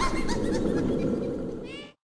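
A cartoon character's laugh trailing off over the fading tail of the song's music, with a last short laughing call near the end. The sound then cuts off abruptly to silence.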